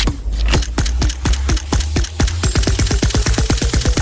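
Electronic music: a steady deep bass under a run of sharp clicks that start a few per second and speed up into a fast roll, a build-up that breaks off near the end.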